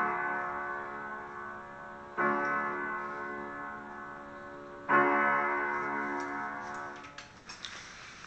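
Slow piano chords, each struck and left to ring and fade: one carrying over from just before, new chords about two seconds in and about five seconds in. The playing ends about seven seconds in, followed by a few faint clicks.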